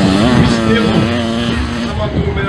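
Mini dirt bike engine revving up and then holding a steady high note at speed, dropping off right at the end.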